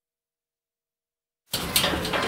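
Dead silence for about a second and a half. Then the noisy background sound of on-location room footage cuts in suddenly, with a few sharp clicks.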